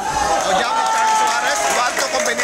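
A man's voice shouting one long drawn-out call that sags slightly in pitch, with a crowd of spectators behind it.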